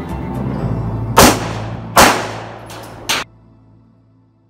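Handgun fired twice, a little under a second apart, each a loud sharp report with a short ring-out, then a third shorter crack a second later. Background music plays underneath and stops right after the third crack.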